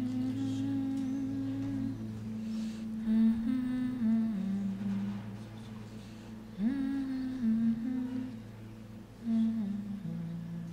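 Wordless humming by voices, in long held notes that slide between a few pitches in phrases of a second or two, over a steady low tone.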